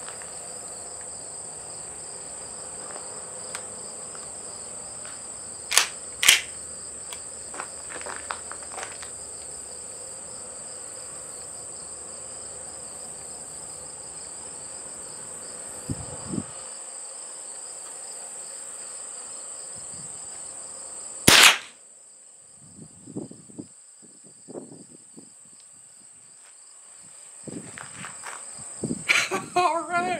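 A single crack of a Remington .22 LR rifle shot about twenty seconds in, the loudest sound, fired at a golf ball that it hits. Before the shot a steady high insect chirring runs on, with two sharp clicks about six seconds in. The chirring stops after the shot.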